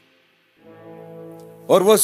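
Background music: a low, sustained chord of several held tones that fades in about half a second in. A man's voice begins speaking over it near the end.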